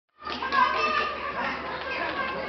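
Indistinct, overlapping talk of several people.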